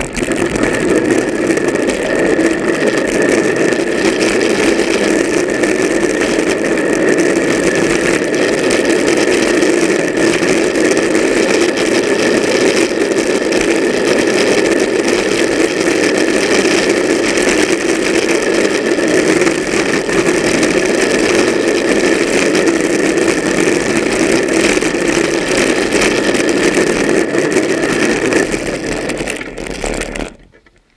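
A drift trike rolling fast downhill on asphalt: its hard plastic rear wheels make a loud, steady rolling roar that stays unbroken for the whole run.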